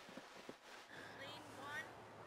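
Faint outdoor ambience with distant voices, and a few soft knocks in the first half second.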